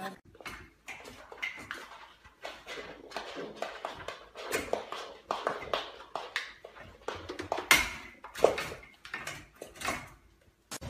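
Irregular clicking and tapping of a young goat's hooves on a hardwood floor as it hops about, with one sharper knock a little before the eight-second mark.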